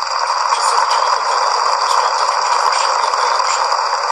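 Steady radio static: an even hiss centred in the midrange, a little louder than the speech around it, with faint steady high-pitched whistles.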